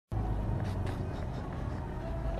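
Engine of an off-road car driving slowly over a rutted dirt track, heard from inside the cabin as a steady low drone.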